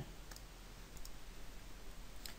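A few faint computer-mouse clicks against quiet room tone.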